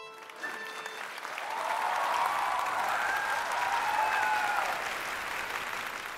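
Studio audience applauding as the last notes of the music fade out; the applause swells about a second in and eases off near the end.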